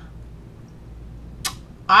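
A pause in a woman's talk: a low steady room hum, one short hiss about one and a half seconds in, and her speech starting again at the very end.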